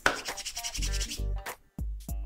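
A person's palms rubbed quickly together for about a second, over background music.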